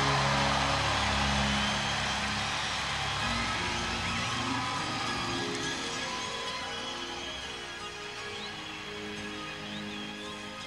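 A live rock band's final sustained chord ringing out and fading away over a large crowd's cheering, with scattered whistles.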